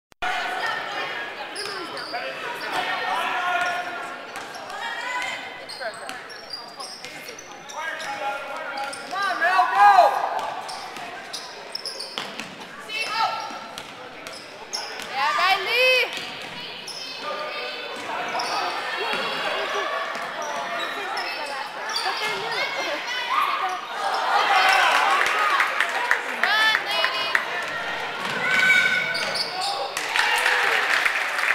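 Basketball game sounds in a gym: a ball bouncing on the hardwood court and sneakers squeaking in short, sharp chirps, with players and spectators calling out indistinctly.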